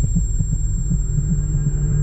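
A low, throbbing hum with soft, regular, heartbeat-like pulses. About halfway through, a steady low tone joins in.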